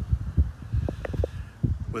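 Irregular low thuds and rumble on a phone's microphone, the buffeting of outdoor air and movement on the handheld phone.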